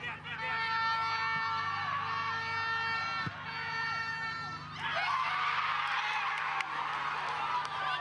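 Stadium spectators cheering and shouting as a goal is scored, breaking out about five seconds in. Before it, a steady held tone sounds in three long stretches.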